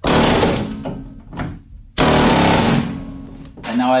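Pneumatic air hammer with a pointed chisel bit running in two bursts of rapid strikes, about a second and a half each, driving a solid buck rivet out of a bus's steel skin after its bucked head has been ground off.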